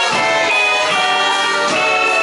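Live rock band playing an instrumental passage: a horn holds long melody notes over strummed acoustic and electric guitars.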